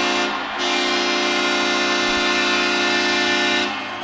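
Arena goal horn blowing to signal a home goal: one steady, sustained blast with a short break about half a second in, stopping shortly before the end.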